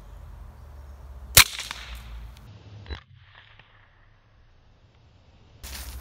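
A single suppressed .22 LR shot from a Ruger pistol fitted with a SureFire suppressor: one sharp crack about a second and a half in, much quieter than an unsuppressed gunshot.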